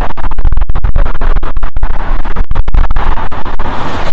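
Loud wind buffeting a phone's microphone outdoors: a rough rushing rumble, broken over and over by brief sharp cutouts.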